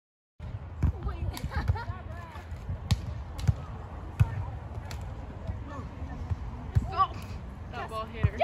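Volleyball being struck during a beach volleyball rally: sharp slaps of hands and forearms on the ball, several over the seconds and some louder than others, with players' and spectators' voices calling faintly between them. The sound begins about half a second in.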